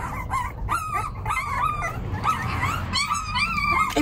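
Very young, unweaned puppies crying in a continuous run of short, high-pitched whines and yelps, some overlapping: hungry pups at syringe-feeding time.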